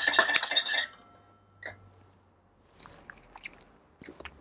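Metal bar spoon stirring orange juice and maple syrup in a stainless steel shaker tin: rapid clinking against the tin with a ringing tone, stopping about a second in. One more clink follows shortly after, then a few faint small clicks.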